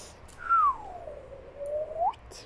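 A single whistled note that slides down from high to low over about a second, then rises again near the end; loudest at its start.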